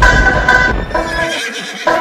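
A horse whinny that falls in pitch and fades within about a second, then music starts near the end.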